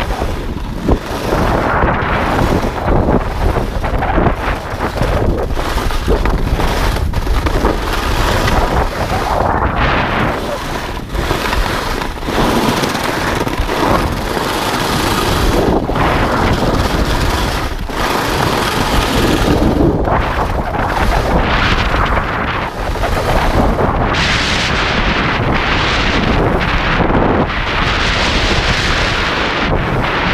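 Wind rushing over the camera's microphone at skiing speed, mixed with the hiss and scrape of skis running over groomed snow; the noise swells and eases from moment to moment as the skier turns.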